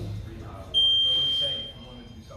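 Gym round timer sounding one long, high-pitched electronic tone that starts suddenly and lasts about a second, signalling the end of a grappling round.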